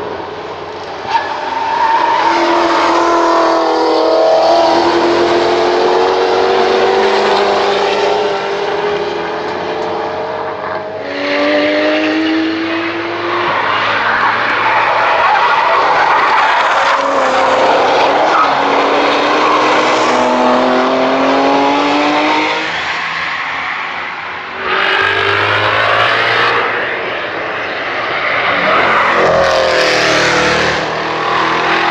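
American muscle and sports cars lapping a racetrack one after another, their engines pulling hard, rising in pitch through each gear and dropping back at the upshifts. There are several separate passes, with abrupt changes to a new car at about 11 seconds, near 25 seconds and again just before the end.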